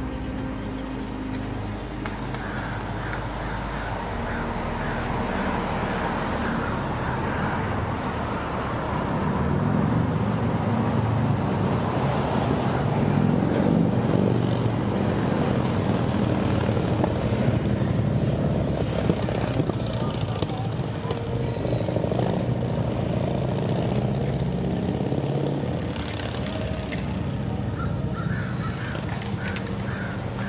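Street traffic: a motor vehicle engine running nearby, growing louder through the middle and easing off again near the end.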